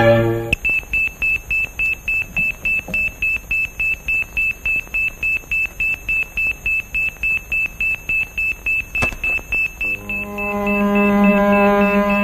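Hospital heart monitor beeping rapidly and evenly at one high pitch, about four beeps a second. The beeping stops near the end as music comes in.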